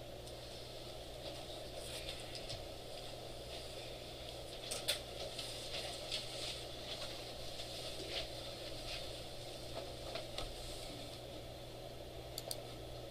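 Steady room hum with scattered faint clicks from a computer mouse and keyboard being worked, one click a little louder about five seconds in.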